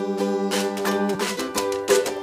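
Music between sung lines: a ukulele strummed, joined about half a second in by a metal washboard scraped in quick rhythmic strokes.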